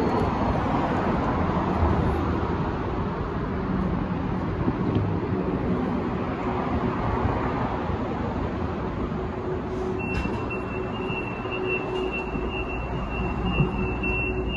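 Siemens S200 light rail vehicle standing at the platform, a steady rumbling noise with a faint constant hum from the car's equipment. About ten seconds in, a steady high-pitched electronic tone comes on and holds.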